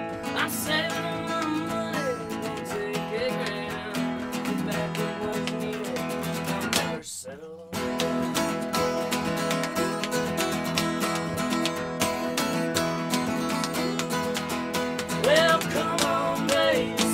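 Two acoustic guitars playing an instrumental rock passage, one strummed in a driving rhythm and one played with a slide, its notes gliding up and down, with hand percussion slapped out on the drummer's legs. The playing stops for a split second about seven seconds in, then picks up again.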